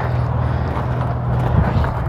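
Footsteps on gravel as someone walks, over a steady low mechanical hum.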